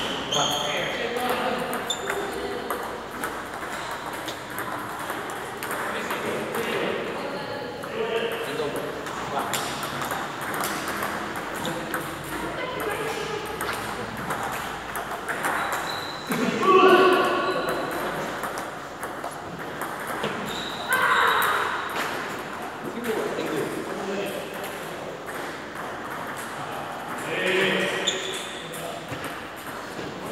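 Table tennis ball being hit back and forth in rallies: repeated sharp clicks of the ball on rubber-faced paddles and the tabletop, echoing in a large hall.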